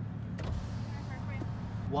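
Car engine idling with a steady low hum, heard from inside the cabin while waiting in a drive-thru line. A brief noise comes about half a second in.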